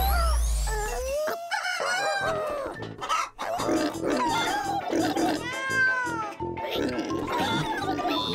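Cartoon background music with a steady beat, with the bunny characters' squeaky, wordless cartoon vocalizations over it. A low hum stops about a second in.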